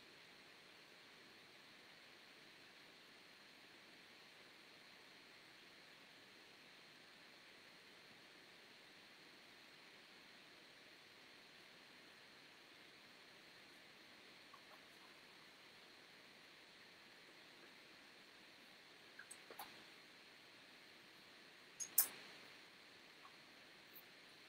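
Near silence: room tone with a faint steady hiss, broken near the end by a few faint clicks and one sharper tap.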